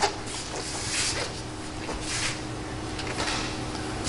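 Soft, scattered rustling and brushing noises as a person handles the front end of a car, over a steady low hum of room tone.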